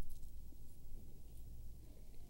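Quiet studio room tone: a steady low hum with a few faint soft clicks.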